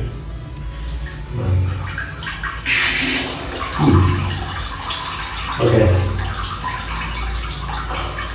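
Luva non-electric bidet's nozzle spraying water, a steady hiss of the jet that starts about three seconds in. The bidet is driven only by the household water pressure.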